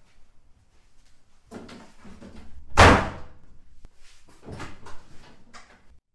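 A door slams shut with one loud bang a little before halfway through. Shuffling and rustling movement comes before and after it.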